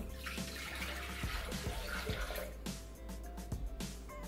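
Water poured from a glass jug into the stainless steel mixing bowl of a Bimby (Thermomix) kitchen machine, a splashing pour lasting about two seconds, over background music with a steady beat.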